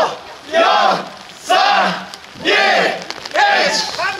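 A group of men in a naked-pilgrimage (hadaka-mairi) procession shouting a short call together, about once a second, four times in a row.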